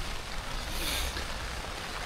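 Steady rain on the hot tent's fabric, a constant hiss, with a brief louder rustle about a second in.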